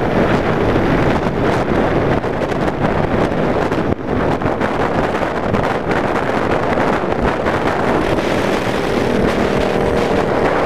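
Cruiser motorcycle running steadily at highway speed, its engine mixed with heavy wind buffeting on the handlebar-mounted camera's microphone, with a brief dip in the noise about four seconds in.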